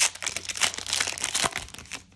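Foil trading-card booster pack wrapper being torn open and crinkled by hand: a dense crackle that stops just before the end.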